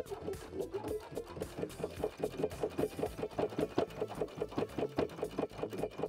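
Domestic sewing machine sewing a straight stitch through shirt cotton, a steady, even run of needle strokes as the seam is sewn.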